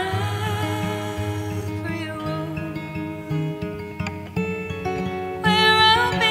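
A woman singing live to her acoustic guitar, a slow song with long held notes; a loud note with vibrato swells near the end.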